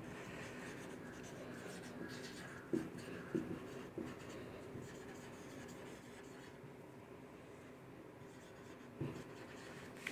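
Marker pen writing on a whiteboard: faint scratching strokes as a phrase is written, with a few slightly louder strokes along the way.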